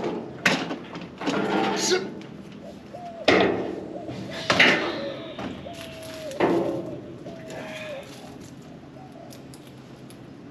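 A series of irregular knocks and clanks, about five over the first seven seconds, some with a short ringing rattle after them. Between them a faint short tone that dips slightly in pitch comes several times.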